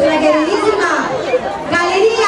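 Speech: people talking over the chatter of a crowd in a large hall, with no music playing.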